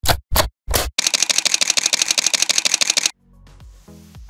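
Camera shutter sound effects in an intro sting: a few sharp hits, then a rapid run of shutter clicks, about ten a second, for about two seconds that stops abruptly. Soft music follows.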